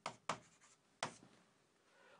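Pen writing on an interactive display's screen: three short, faint strokes, the last about a second in.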